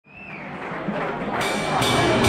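Live rock band music fading in from silence, with repeated cymbal hits from about halfway through.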